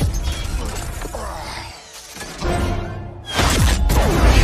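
Action-film soundtrack: music under shattering, crashing sound effects, with a lull near the middle and a sudden loud crash a little after three seconds in.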